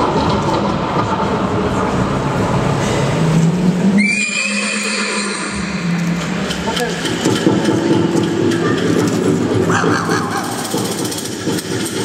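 A horse whinnying: one call about four seconds in, high and slightly falling.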